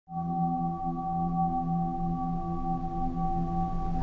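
Soft ambient drone from the film's soundtrack: several steady tones held together like a singing bowl or synth pad, the lower ones gently pulsing, starting at once.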